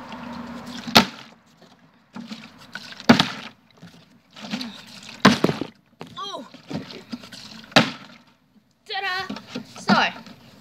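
Large plastic milk bottle partly filled with water being flipped and landing on a concrete floor: a sharp knock about every two seconds. Short wordless vocal sounds between a couple of the throws.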